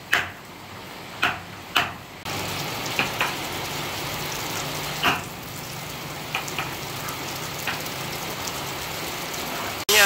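Sharp knocks of carving chisels being struck on wood, four in the first two seconds and then sparser, fainter ones over a steady background noise.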